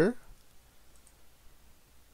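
A faint single computer mouse click about a second in, against quiet room tone.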